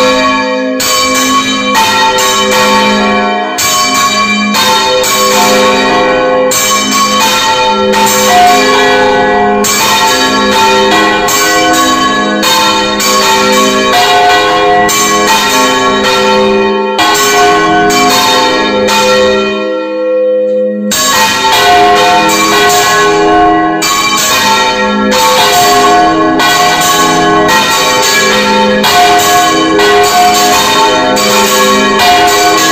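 Bronze church bells rung by full-circle swinging (Valencian volteig), heard close up in the belfry: a loud, dense run of clapper strokes with bells of several pitches ringing over one another, with a brief gap in the strokes about two-thirds of the way through.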